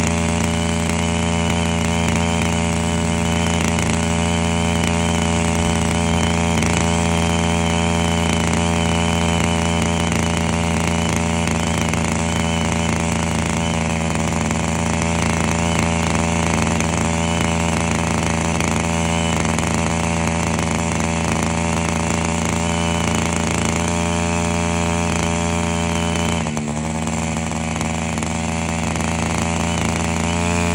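Septic vacuum truck's pump and engine running steadily while the suction hose draws sludge out of an aerobic septic tank: a loud, even drone. Near the end the level dips briefly and the pitch then rises slightly.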